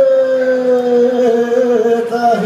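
A male singer holds one long, slowly wavering note in a live Greek folk song, over a steady lower drone.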